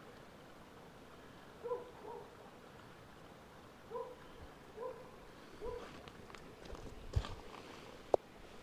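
A dog whining in five short, low-pitched calls, then clicks and scraping near the end as a plastic ball-thrower scoops a tennis ball out of the grass.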